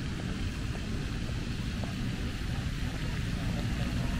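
Outdoor park ambience: a steady low rumble with an even hiss of spraying fountain water, and faint voices.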